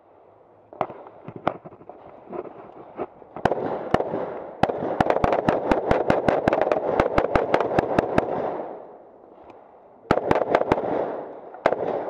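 Carbine gunfire from several shooters. A few scattered shots come first, then a dense, fast string of overlapping shots, a short lull, and a few more shots near the end.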